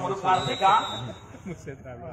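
Man's voice commentating, with a thin steady high whistle tone under it for about a second near the start: the referee's whistle signalling the serve.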